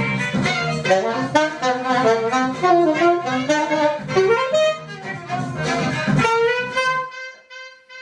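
Saxophone playing a lively melody over a backing track with bass and drums. About six seconds in it settles on one long held note, and the backing stops under it shortly after.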